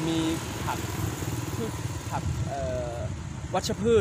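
A motor engine running steadily, a low rumble under slow speech.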